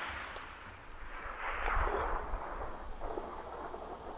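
Faint, fading echo of a Barrett M82A1 .50 BMG rifle shot rolling back from the surrounding hills, swelling and dying away over a couple of seconds. A brief metallic ping sounds shortly after the start.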